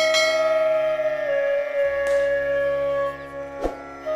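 Background music led by a flute-like wind instrument holding a long note that steps down a little over a second in. A bright bell-like chime rings out at the start and dies away, and a sharp click comes near the end.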